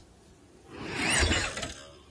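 A cartoon crash sound effect: a clatter of breaking and shattering that swells in about half a second in and dies away before the end.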